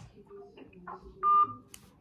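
A single short electronic beep from a mobile phone, one steady tone lasting about a quarter of a second, a little over a second in.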